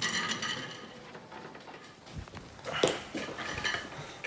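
Quiet handling noises as an electric guitar is lifted from its stand: a soft thump about two seconds in, then a light clink just before three seconds.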